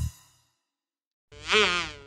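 The music cuts off just after the start and about a second of silence follows. Then a cartoon buzzing sound effect like a flying insect comes in, a buzz with a wobbling pitch.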